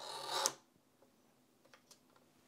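Film cutter's blade drawn along its track, slicing through a strip of film negative: one short scraping stroke of about half a second, growing louder and then cutting off.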